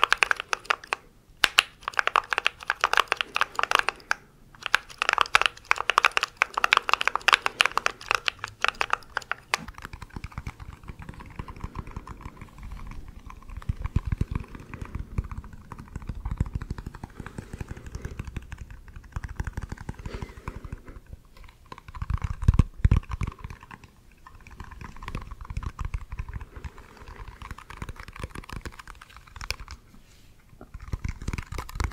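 Mechanical keyboard keys typed rapidly right against the microphone for about the first ten seconds, with two brief pauses. The sound then changes to fingers tapping and rubbing a small lidded tub close to the mic, duller and deeper, with a few heavier thuds.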